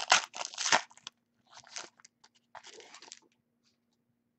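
Crinkling and rustling of trading cards and their foil pack wrappers being handled, in three short bursts, the first and loudest lasting about a second.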